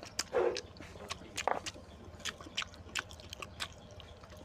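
A person chewing a mouthful of oily mutton curry close to a clip-on microphone, with wet mouth smacks and irregular clicks.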